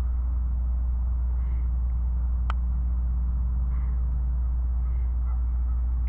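A steady low rumble, with faint short calls a few times and one sharp click about halfway through.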